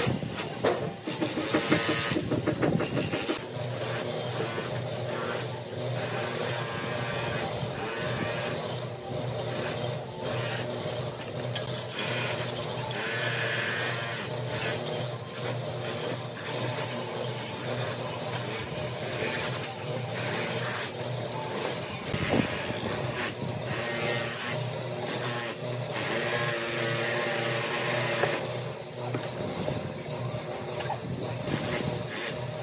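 A steady machine hum, like a motor or engine running, throughout, with intermittent scraping of a steel trowel working fresh cement render on the pillar.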